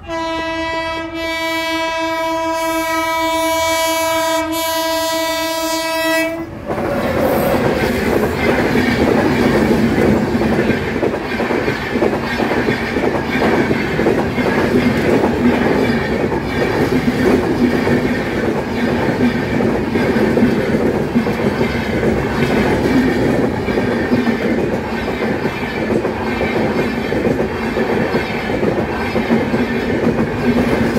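The air horn of an Indian Railways WAP7 electric locomotive sounds one long steady blast of about six seconds. The passenger coaches then roll past over the level crossing, with a loud continuous rumble and the clickety-clack of wheels over the rail joints.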